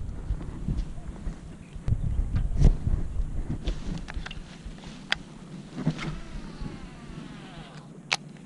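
Baitcasting reel spool whirring as the jig is cast, its thin whine falling in pitch as the spool slows, with light clicks from the reel and a sharp click at the end as the reel is engaged. Wind rumbles on the microphone through the first half.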